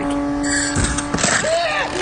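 A voice making drawn-out sliding sounds over a steady low background tone, with a dull thud about a second in.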